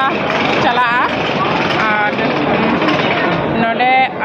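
A voice talking in short bursts over a loud, steady din of railway station background noise.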